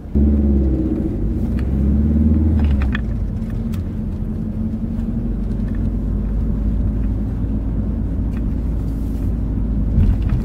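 Car engine and road noise heard from inside the cabin as the car pulls away and gathers speed. A deep rumble starts suddenly and is strongest for about the first three seconds, then settles to a steadier, lower rumble as the car cruises.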